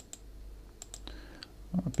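Computer mouse button clicking a handful of times, some clicks in quick pairs, as layer checkboxes are ticked in a software dialog.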